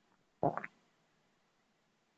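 A brief low sound from the man's voice or throat about half a second in, lasting about a quarter of a second; otherwise near silence.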